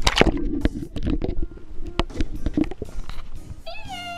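Close handling noise: a rapid run of clicks, knocks and rubbing as fingers and a wet plastic toy figure brush against the microphone. A child's high sung note comes back in near the end.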